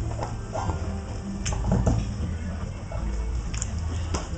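A banjo plucked softly: a few scattered quiet notes over a steady low rumble.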